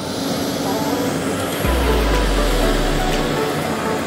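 Electric lawn scarifier with verticutting blades running steadily as it is pushed over a kikuyu lawn, a motor whine over the noise of the blades in the grass, with a deep rumble for about a second and a half midway.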